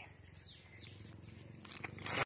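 Quiet background with a faint low hum and a few faint high chirps, then clicks and rustle of a phone being handled near the end.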